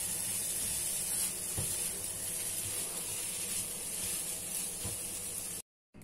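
Fried rice sizzling steadily in a nonstick frying pan as it is stirred and tossed with a spatula, with a few light scrapes of the spatula. The heat has just been switched off. The sound cuts off suddenly near the end.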